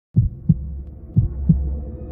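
Heartbeat sound effect in intro music: two low double thumps, lub-dub, about a second apart. A low drone swells in under the second pair.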